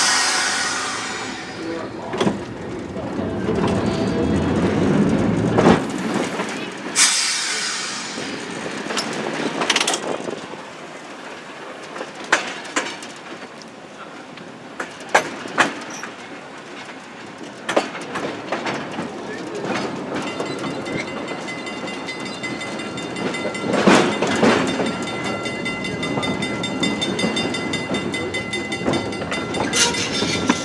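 Open-air electric trolley car running along the track, its wheels clacking at irregular intervals over rail joints and switches under a steady rumble. In the last third a steady whine joins the running noise.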